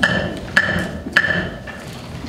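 Wooden gavel struck three times on its wooden sounding block, about half a second apart, each knock ringing briefly: the strikes that formally open the meeting.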